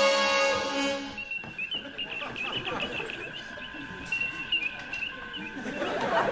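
A held musical chord ends about a second in, giving way to sci-fi spaceship bridge ambience: a steady electronic tone with a stream of short warbling computer bleeps and chirps.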